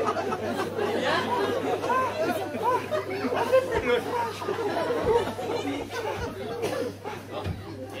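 Several voices chattering over one another, with a steady low hum underneath.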